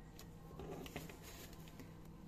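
Faint small clicks and rustles of hands handling a plastic doll, over a low steady room hum.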